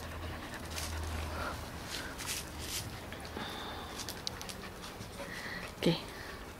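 Spanish water dog panting close by, a run of short, irregular breaths.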